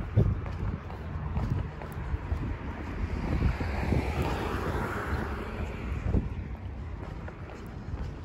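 Wind buffeting the microphone over road traffic noise, with a passing vehicle's hiss swelling and fading around the middle.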